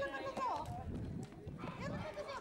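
A group of children and adults shouting and calling out in high, excited voices, with running footsteps slapping on the asphalt as they take turns leaping over a bonfire.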